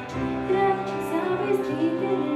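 A small live band playing a song with voices singing, over electric bass, guitar and keyboard.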